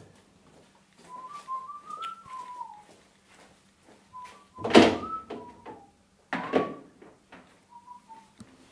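A person whistling a short tune in several phrases. Two thuds break in, the louder one just under five seconds in and another about a second and a half later.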